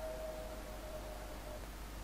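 Faint background room tone: an even hiss and a low steady hum, with a thin steady tone that fades away about one and a half seconds in.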